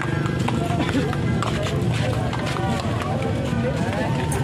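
Street procession din: irregular drum strikes and music over a crowd's voices and calls.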